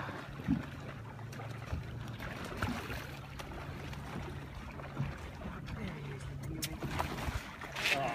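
A boat's motor running with a low, steady hum, with water noise and a few short knocks on the hull or deck.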